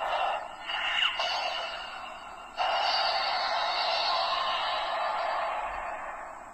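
Black Spark Lens transformation toy playing its finishing-move sound effect through its small built-in speaker after a long press of the button. It begins with a charging effect, then about two and a half seconds in it jumps suddenly to a louder, steady rushing blast that fades near the end, with the thin sound of a tiny speaker.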